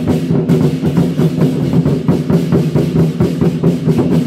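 A Taiwanese war-drum troupe (zhangu) beating large barrel drums in a fast, dense, steady rhythm.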